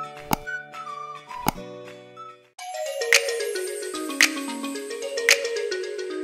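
Short electronic jingle with two click sound effects, about a third of a second and a second and a half in, then a different music cue starting about two and a half seconds in, with falling notes and a strong percussive hit about once a second.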